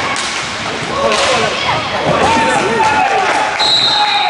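Roller hockey goalmouth scramble in a hard-floored hall, with shouting voices throughout and sharp clacks of stick and ball about a quarter second and a second in. A short, steady, high whistle blast sounds near the end, typical of a referee stopping play.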